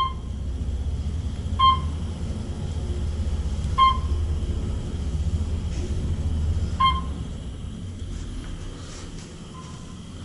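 Otis traction elevator cab travelling down with a steady low rumble, and a short electronic beep sounding four times, the floor-passing signal as the cab goes by each landing. The rumble eases near the end as the car slows.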